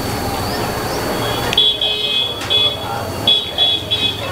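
High-pitched electronic beeping in short, uneven pulses, starting about one and a half seconds in, over a steady low hum.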